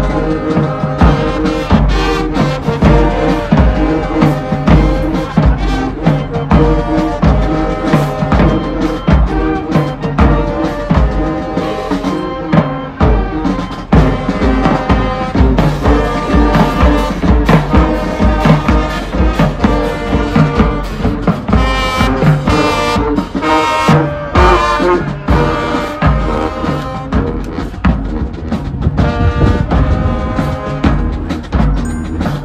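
A marching band playing: brass (trumpets, trombones and sousaphones) carrying the tune over marching percussion with a steady drum beat.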